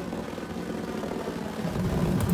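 Gas burner firing through a pipe combustion chamber, running with a low, pulsing rumble that sounds like a pulse jet, getting louder toward the end. The concussions are the sign of unstable combustion in this chamber design.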